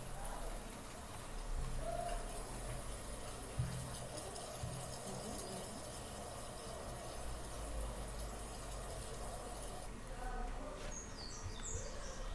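Faint outdoor night ambience from a phone video played back over computer speakers: a steady low hum and hiss, with a few short high chirps near the end.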